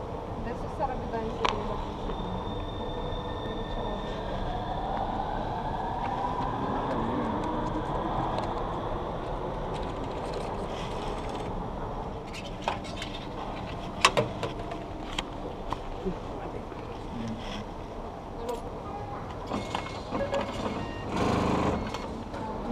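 Coins going into a metro ticket vending machine, a few sharp clicks, over the steady hum of an underground station. A whine rises slowly in pitch for several seconds early on, and there is a short louder burst of noise near the end.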